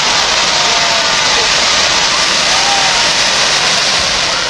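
Fireworks going off, shooting showers of sparks and coloured stars: a continuous loud hiss.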